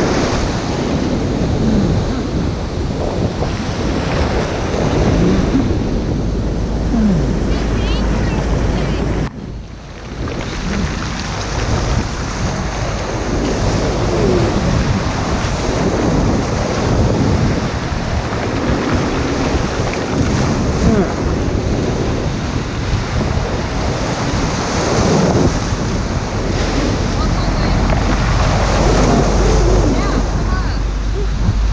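Breaking waves and rushing surf close around the microphone, with heavy wind noise buffeting it. The sound drops briefly about nine seconds in, then the surf and wind carry on.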